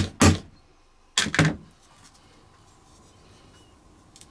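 A hammer striking a leather hole punch, driving it through folded layers of leather into a wooden board: two quick blows, then two more about a second in.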